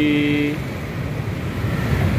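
A vehicle horn holding one steady note, cutting off about half a second in, followed by the low steady rumble of idling engines and passing street traffic.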